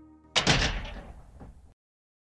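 The tail of the closing music fades out, then a sudden loud slam about a third of a second in, with a rattling decay that cuts off abruptly into silence.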